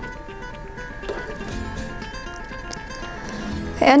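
Background music with held notes, under a few soft knocks of a spatula stirring the thick bean and sweet potato filling in a frying pan.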